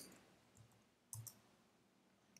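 A few faint computer keyboard key clicks in near silence: one at the start and a short cluster about a second in.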